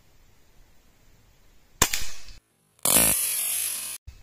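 A single sharp crack from a .22 (5.5 mm) Hatsan Vectis PCP air rifle firing, about two seconds in, dying away quickly. A moment later it is followed by a loud, steady rushing noise.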